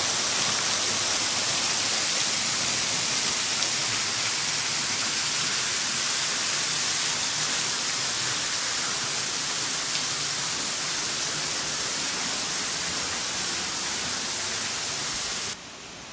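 Small waterfall: a thin curtain of water falling onto rocks, heard as a steady, fairly loud splashing hiss. It cuts off abruptly near the end.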